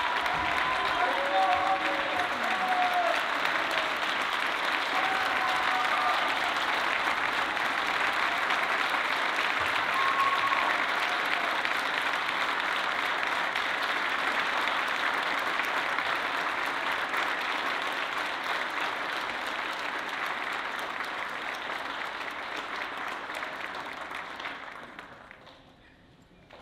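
Audience applauding steadily, with a few shouts and cheers in the first several seconds; the applause tapers off and dies away near the end.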